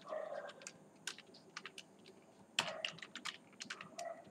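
Typing on a computer keyboard: a short run of keystrokes at the start, a pause with a few stray taps, then a quicker run of keys a little after halfway.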